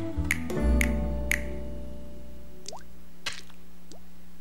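Jazzy cartoon music cue: sharp finger snaps about twice a second over a low bass note, fading out after about a second and a half. Near the end come two short rising, wet-sounding drip effects.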